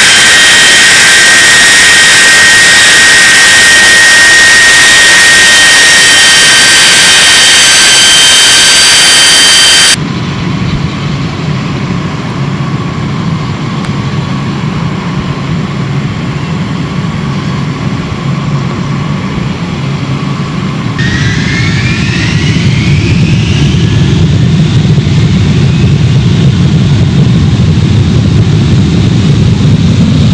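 A B-52H Stratofortress's eight TF33 turbofan engines whine loudly at close range as the bomber taxis past, with several steady high tones over a rush. After a cut they are heard from afar as a low rumble. About two-thirds of the way through, the engines spool up with rising whines and grow louder as the takeoff roll begins.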